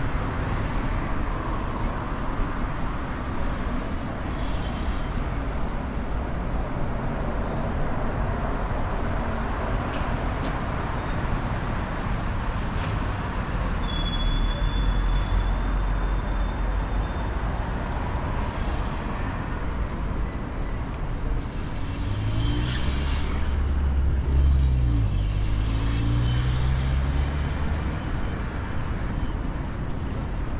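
Street traffic on a wide boulevard: a steady low rumble of cars passing. About two-thirds of the way in, one vehicle's engine note rises and falls as it accelerates past.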